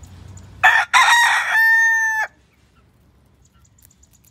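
A rooster crowing once, loud and close, starting a little over half a second in. The crow lasts about a second and a half: a short first note, a brief break, a rougher middle stretch, then a drawn-out final note that cuts off sharply.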